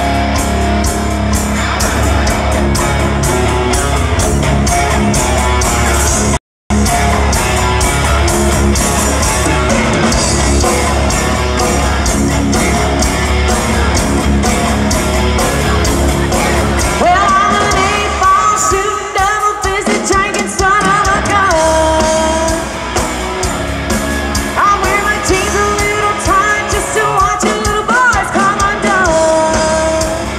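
Live rock band playing: electric guitar, bass guitar and drums, with a female lead vocal coming in about seventeen seconds in. The sound cuts out completely for a fraction of a second about six seconds in.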